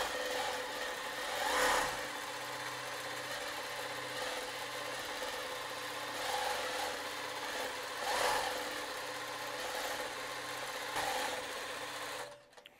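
Juki Miyabi J350QVP long-arm quilting machine stitching steadily as it is guided across a quilt on a frame, its motor and needle mechanism making a continuous hum. The sound grows briefly louder about two seconds in and again about eight seconds in.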